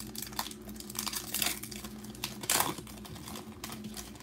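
Foil wrapper of a trading-card pack crinkling and tearing as it is opened, a string of crackles with louder ones about one and a half and two and a half seconds in.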